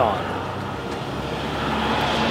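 A road vehicle passing, a steady rush of traffic noise that slowly swells louder toward the end.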